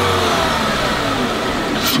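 Volkswagen Passat W8 4.0's eight-cylinder engine running with an open cone air filter in place of the stock air filter, its engine and intake note steady with a slight downward drift in pitch.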